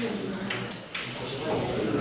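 Indistinct talking in a classroom, with a few short sharp taps of chalk on a blackboard in the first second.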